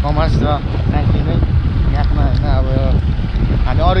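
Wind buffeting the microphone on a moving motorcycle, a steady low rumble, with a man talking over it.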